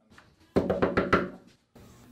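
Someone knocking on a door: a quick run of about half a dozen knocks lasting under a second.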